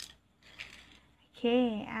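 A woman's voice saying a drawn-out 'okay' from about one and a half seconds in, after a brief high hiss at the very start and a faint rustle.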